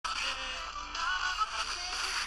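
A radio being tuned across stations: snatches of music and voices through static, with whistling pitch glides as the dial sweeps.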